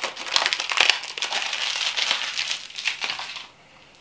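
Plastic bubble wrap crinkling and crackling as it is handled and pulled open around a potted plant; the crinkling stops about three and a half seconds in.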